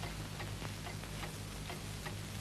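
Light, irregular clicks of cutlery and dishes at a dinner table, a few a second, over the steady low hum of an old film soundtrack.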